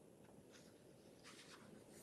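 Near silence: room tone, with a faint soft rustle about one and a half seconds in.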